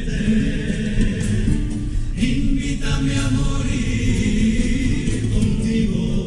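Male comparsa chorus singing together in held, sustained lines, accompanied by Spanish guitars.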